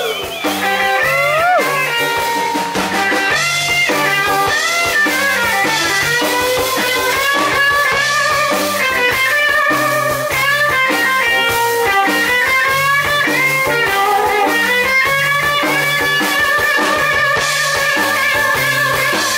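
Live electric blues band playing: an electric guitar takes the lead with bent, wavering notes over a walking bass line and drums.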